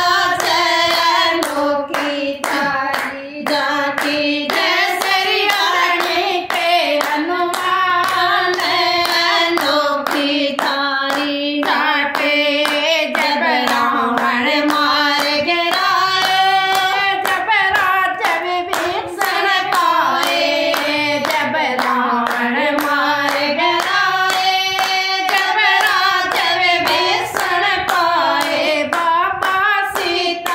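A group of women singing a devotional bhajan together, clapping their hands in a steady rhythm.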